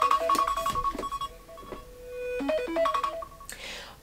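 A timer alarm ringing a short melody of electronic notes that repeats, with a longer held note in the middle. It signals that the countdown has run out.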